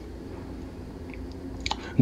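Quiet room noise with a few faint, short clicks, the most distinct shortly before the end.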